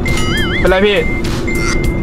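An edited-in whistle-like sound-effect tone, wavering up and down in pitch for about half a second and then held level, with a short break a little after a second in. Under it is a steady low drone of the car cabin.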